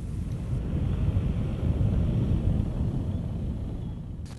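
Outdoor ambience outside a building entrance: a steady low rumble of noise, swelling slightly in the middle, with no clear individual event.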